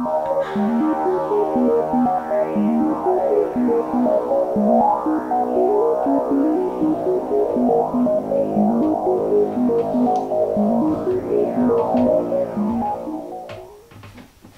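Instrumental synthesizer intro music: held chords under a melody of short stepping notes, fading out near the end.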